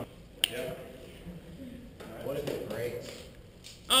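One sharp click about half a second in, then faint, distant voices murmuring in a large echoing hall.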